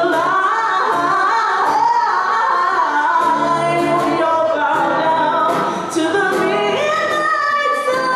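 A woman singing a slow melody live, holding long notes that waver in pitch, over light ukulele strumming.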